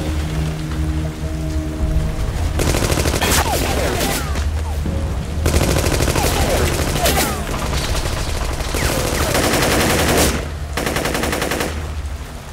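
Machine gun firing long, rapid bursts from about two and a half seconds in, with short breaks between bursts. Before the firing starts there is a low held tone.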